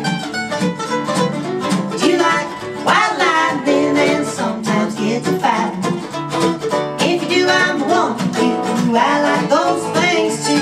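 Live honky-tonk country song played on acoustic guitar and mandolin, a steady strummed rhythm with plucked runs over it.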